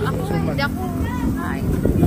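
A vehicle engine running with a steady low rumble, under indistinct nearby voices.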